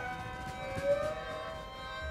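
A chamber ensemble's strings hold long notes while some of them glide slowly up and down in pitch in glissandi, over a bed of other sustained tones. A short accent comes about a second in.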